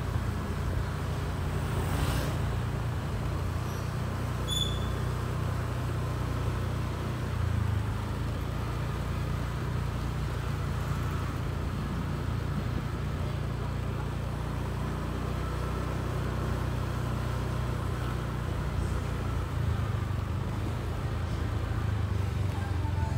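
Steady low engine hum of a motorbike running at slow, even speed, with no rise or fall in pitch.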